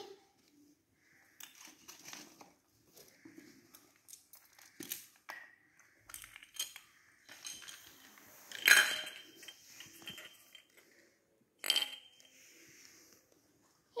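Small toy dishes and play food being handled: scattered light clicks, knocks and clinks, the sharpest ringing clinks about nine and twelve seconds in.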